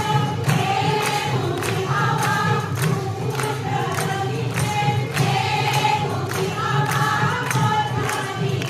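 A large crowd of women singing Assamese devotional nam in unison, with hand-clapping keeping a steady beat of about two claps a second.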